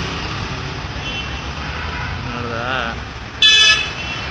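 Road traffic with a steady low rumble, and a short, loud vehicle horn toot about three and a half seconds in.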